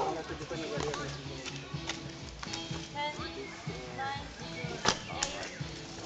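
Trials bicycle hopping on boulders: sharp knocks of the wheels landing on rock, the two clearest close together near the end, over the murmur of spectators' voices.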